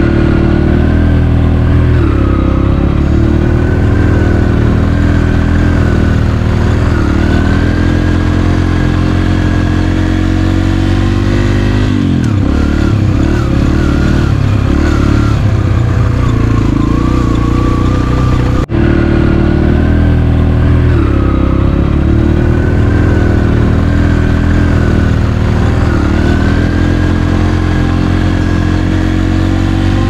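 Yamaha TT-R125 dirt bike's single-cylinder four-stroke engine running steadily under way on a dirt track, heard up close from the rider's seat. The engine note eases down and climbs again a little before the middle as the throttle is rolled off and reopened, with a momentary break just past the middle.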